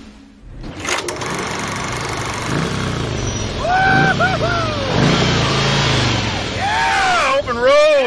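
Cruiser motorcycle engine running as the bike rides up and slows to a stop, its revs rising and falling. A man's voice calls out over it several times, about halfway through and again near the end.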